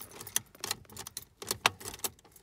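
Car ignition key and keyring jangling and clicking in the ignition barrel as the key is worked against the locked steering column to free the steering lock: a string of sharp clicks, several a second.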